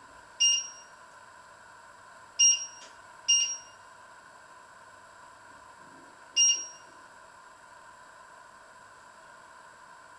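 Four short electronic beeps from the touch controls of an electric glass-ceramic cooktop as they are pressed. The first comes about half a second in, two come close together at two and a half and three and a half seconds, and the last at about six and a half seconds. A faint steady hum runs underneath.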